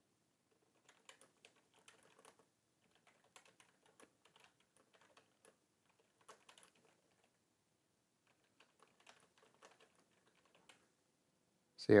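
Faint computer keyboard typing: irregular runs of keystroke clicks, with a pause of about two seconds after the middle.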